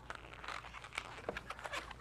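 Inflated latex 260 twisting balloon being handled as its neck is tied off: light rubbery crinkling and small squeaky ticks of latex rubbing on latex and fingers.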